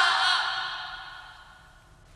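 Screaming and music from a horror film's soundtrack dying away, fading out over about a second and a half.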